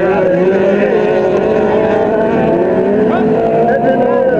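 Several autocross race cars' engines running hard around a dirt track, their pitches rising and falling as the drivers rev and shift.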